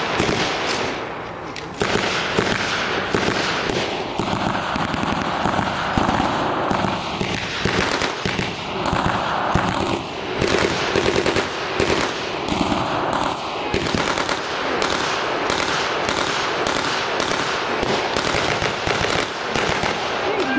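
Blank-firing rifles and a belt-fed machine gun in a staged WWII firefight: irregular single shots and rapid bursts of gunfire, crackling on with little pause.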